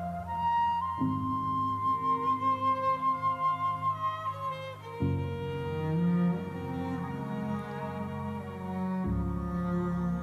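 Live bowed string instruments, a violin among them, playing slow held notes: the low note changes about every four seconds, with a higher melody line over the first few seconds.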